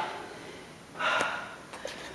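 A woman breathing hard from exertion, with one sharp, gasping breath about a second in: she is out of breath from the cardio workout.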